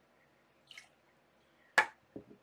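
A glass liqueur bottle set down on a hard tabletop with a single sharp knock near the end, after a faint brief sound earlier on.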